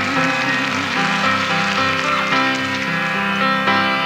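Live folk-rock instrumental passage without singing: acoustic guitar with the band playing sustained chords in a steady pulse.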